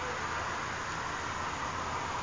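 Steady hiss with a low hum underneath, no distinct events: a police car idling at the roadside.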